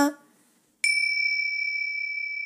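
A held chanted note ends at the very start, then after a brief silence a small bell is struck once, a little under a second in, and rings on with a clear, high, steady tone.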